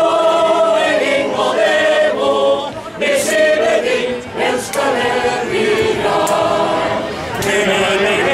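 A group of voices singing unaccompanied polyphony, several parts at once, in long held notes with short breaks between phrases.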